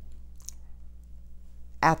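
A pause in a woman's speech with a steady low hum of room tone, a faint short click about half a second in, and her voice starting again near the end.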